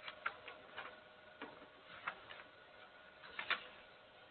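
Faint, irregular light clicks and taps, about eight or nine, with the sharpest near the end, from notes and a book being handled at a lectern. A faint steady hum lies underneath.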